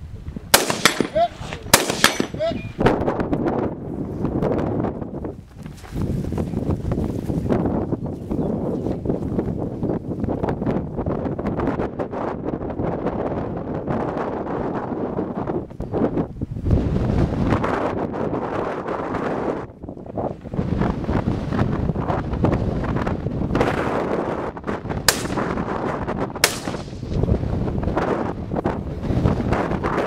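Two sharp gunshots in the first two seconds, then a long stretch of wind buffeting the microphone, and two more gunshots about a second and a half apart near the end.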